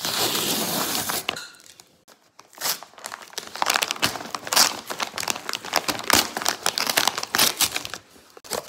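Brown paper mailer bag being torn open: a steady rip for about a second at the start, then after a short pause a long run of crinkling and crackling as the stiff paper is pulled apart and handled.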